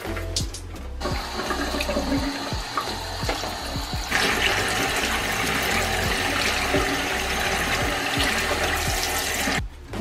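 Bathroom sink tap running into a soapy basin of clothes being hand-washed. The flow gets louder about four seconds in and stops abruptly just before the end.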